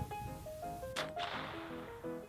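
A single shot from a Henry Golden Boy lever-action .22 LR rifle firing a CCI Velocitor round, one sharp crack about a second in, followed by a short fading hiss.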